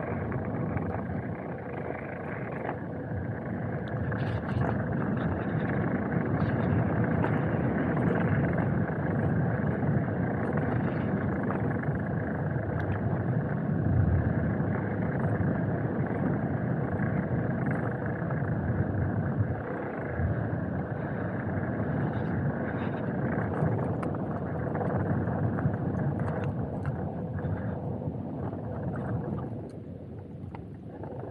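Motorcycle engine running steadily under wind noise while riding along a dirt forest road.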